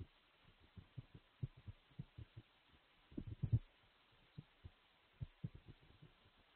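Faint, irregular low thumps, with a louder cluster a little past three seconds in.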